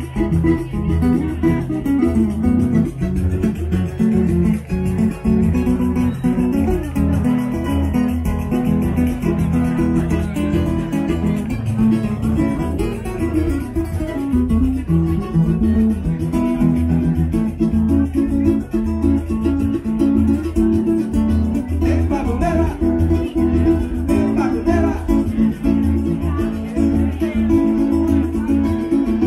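Live acoustic duo of cavaquinho and acoustic guitar playing a song together, plucked and strummed at a steady pace. A voice sings over the instruments in the last several seconds.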